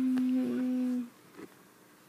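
A person humming one steady, low note that stops about a second in.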